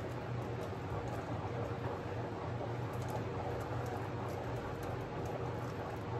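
A canvas spinning fast on a paint spinner: a steady low whirring rumble with scattered faint ticks throughout.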